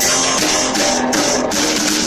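Live rock band playing: electric guitar notes over a full drum kit, with cymbals struck again and again.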